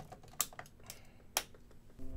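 A few irregular computer keyboard key clicks, sparse and quiet.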